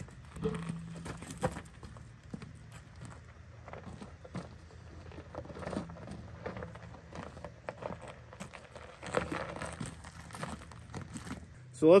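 A large forged wheel and off-road tire being pulled off the truck's front hub and moved over gravel. Scattered clunks and scuffs, with crunching steps.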